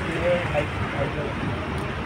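Busy street-stall ambience: indistinct background voices over a steady low rumble of road traffic.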